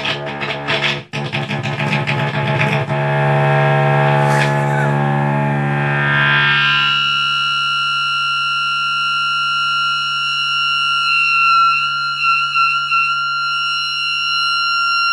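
Gibson Les Paul electric guitar played loud and distorted through a Marshall amplifier: quick picked and strummed notes at first, then a held note that settles into a steady high-pitched feedback tone. The tone wavers a little near the end.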